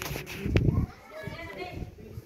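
People's voices talking and calling out, with a loud low thump about half a second in.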